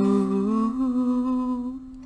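A man hums one long held note over the ringing of an acoustic guitar chord. The note bends up slightly about half a second in and fades away near the end.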